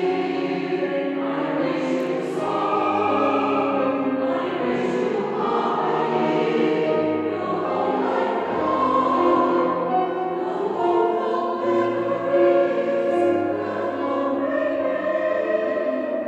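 Mixed amateur choir singing a Christmas song with instrumental accompaniment, sustained chords throughout.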